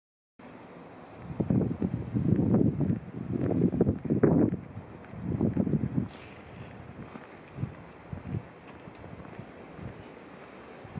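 Wind buffeting the microphone in irregular low gusts, heaviest in the first half, then easing to a light background rush.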